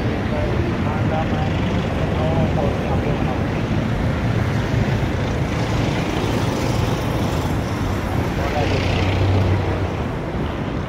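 Busy street traffic close by: vehicle engines running and passing, with a louder low engine drone near the end.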